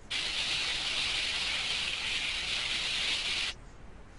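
Sliding sound effect from an on-screen sleigh-pushing simulation: a steady hiss that starts suddenly and cuts off about three and a half seconds later as the sleigh runs along the track.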